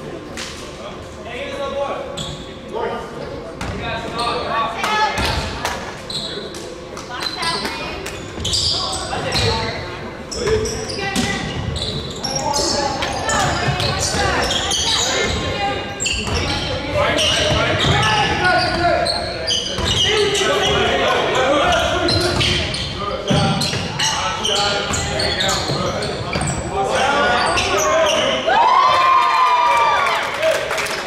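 Basketball dribbled and bouncing on a hardwood gym floor during a game, mixed with indistinct voices of players and spectators calling out, all echoing in the large gymnasium.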